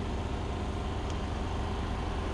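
Steady low-pitched background hum and rumble, even throughout, with no sudden sounds.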